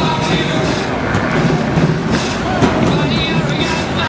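A pack of skid plate race cars running together on a paved oval: front-wheel-drive cars whose locked rear ends drag on skid plates, heard as a steady, dense wash of engine and track noise.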